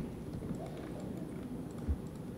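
Quiet room tone with a few faint clicks and a soft low thump near the end.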